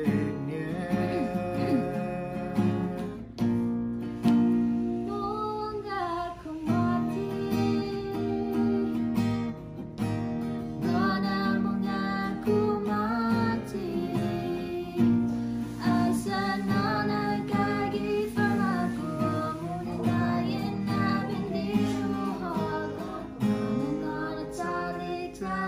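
Acoustic guitar strummed as the accompaniment to a slow song, sung by a man and a girl.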